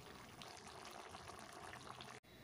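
Faint bubbling of a thin curry simmering in a kadai (wok), a low, even hiss.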